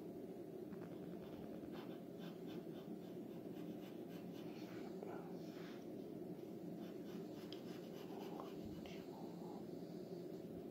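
Wooden graphite pencil sketching on paper, many short, irregular scratching strokes, over a steady low hum.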